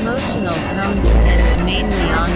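Experimental electronic noise music: layered synthesizer tones gliding up and down over dense hiss, with a deep bass tone swelling briefly about halfway through.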